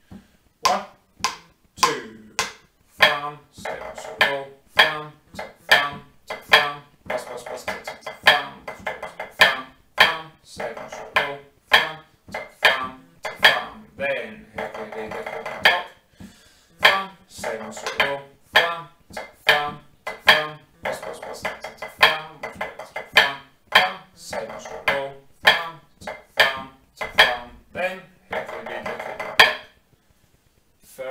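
Drumsticks playing a pipe band snare part of a 3/4 march on a rubber practice pad: crisp strokes in a steady three-beat rhythm, broken by flams and close runs of rolls. The playing stops right at the end.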